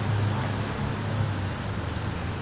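Steady city street background noise: an even hiss with a constant low hum underneath, with no single event standing out.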